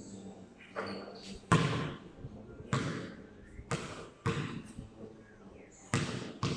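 Basketball from a jump shot coming down and bouncing repeatedly on a concrete court: a string of thuds spaced roughly a second apart, the loudest about a second and a half in.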